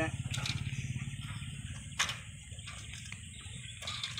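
Bare steel rims of a bicycle with its tyres removed, rolling over brick paving: a fast, continuous rattle that thins out after about two seconds, with one sharp knock about two seconds in.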